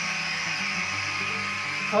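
Guitar background music over the steady airy whir of a small handheld electric blower (a LOGOS BBQ gun blower) blowing air into a Japanese honeybee hive box to drive the bees down out of the top box before the honey is cut out.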